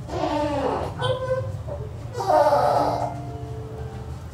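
A person's voice in two drawn-out, wavering utterances about a second and a half apart, over soft background music with long held notes.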